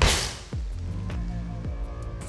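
Landing from a jump off a high box: one short, sharp rush of noise right at the start that dies away within half a second, over steady background music.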